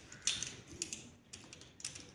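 A few light clicks and clatter of plastic toys being handled: dolls and a plastic construction-toy car.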